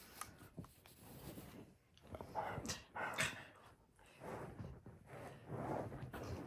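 Husky–malamute mix grumbling in several short, low vocal bursts, the complaining noises of an annoyed dog that has just been moved.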